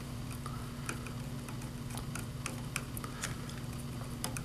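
Faint, irregular small clicks and ticks of wire leads and a screwdriver being worked into a plug-in screw terminal block on a motor drive's circuit board, over a steady low hum.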